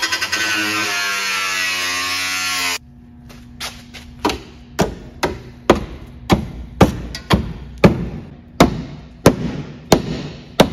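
A power cutting tool runs for a few seconds with its pitch falling, then stops suddenly. A hammer then strikes the cut sheet-metal tabs of a car's rear wheel-arch lip over and over, about two sharp blows a second, bending them up.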